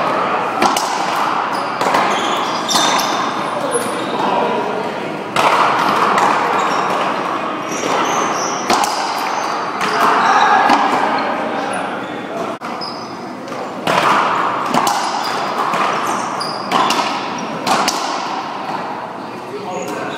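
Racquetball rally: irregular sharp cracks of the ball off racquets, the wall and the floor, echoing in a large hall, over a background of voices.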